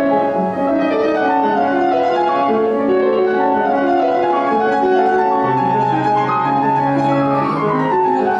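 Kawai grand piano being played: a melodic line over chords and held bass notes, with a quick falling run near the end.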